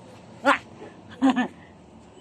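Two short high-pitched laughing squeals, one about half a second in and a longer double one about a second later, from people playing a chasing game.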